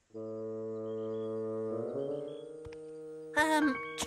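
A single low musical note held steady for almost two seconds, then wavering and giving way to a second, lower-level low note. A voice comes in near the end.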